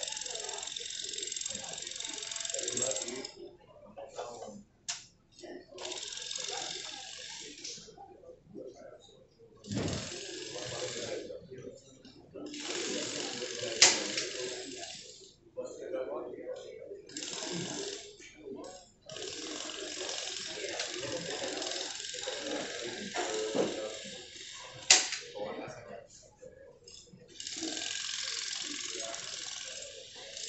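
People talking, with repeated stretches of hissing rustle, each one to three seconds long, and a few sharp clicks.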